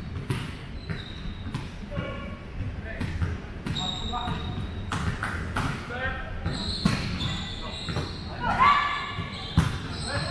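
A volleyball being hit and bouncing on a hardwood gym floor: a series of sharp smacks echoing in a large hall, mixed with short sneaker squeaks and players calling out. The loudest moments come near the end, a shout and then a hard hit, as a rally gets going.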